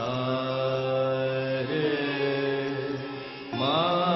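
Odissi classical music: a singer holds long notes, opening on the sargam syllable "sa". The pitch steps about halfway through, and a new note slides up shortly before the end.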